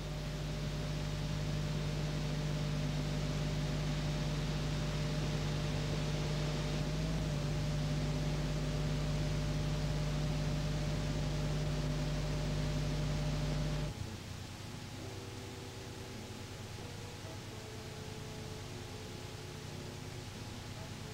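Steady hiss with a low electrical hum from a blank stretch of old videotape. About fourteen seconds in, the hum cuts out and the hiss drops to a quieter level.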